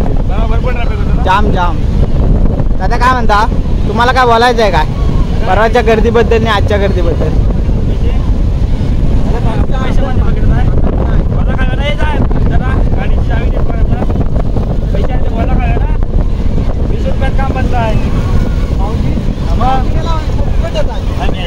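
Wind buffeting the microphone in a loud, uneven low rumble, with men's voices calling out over it in the first several seconds and again briefly later on.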